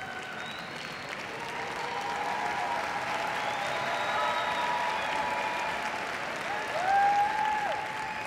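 Audience applauding steadily, growing louder toward the middle, with a brief held call from the crowd near the end.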